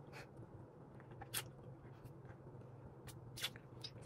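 Faint mouth clicks and smacks from eating a squeezed jelly candy: a few short, sparse ticks over a low, steady room hum.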